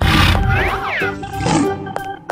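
A loud animal roar sound effect that starts suddenly and fades out over about a second and a half, over children's background music.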